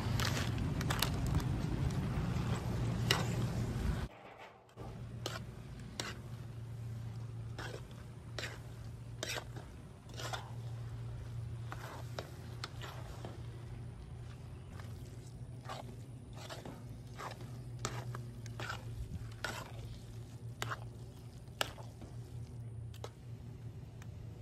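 A spoon stirring and scraping through a pot of ground wild-pork burrito filling as shredded cheese is mixed in: irregular scrapes and clicks over a steady low hum. It is louder and denser for the first few seconds, then drops away suddenly.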